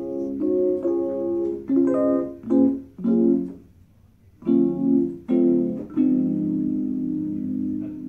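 Electric keyboard played through a small cigar box amplifier: a string of short chords, a brief pause about halfway, then more chords, the last one held for about two seconds.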